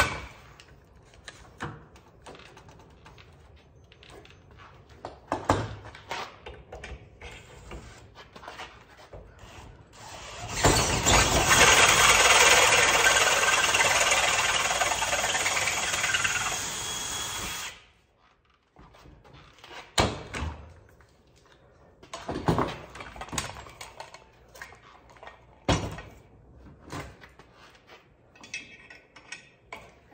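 Cordless drill boring through the metal of a trailer jack mount for about seven seconds, starting about ten seconds in and stopping suddenly: the hole is being enlarged so the retaining pin can slide through. Before and after, scattered knocks and clicks of the parts being handled.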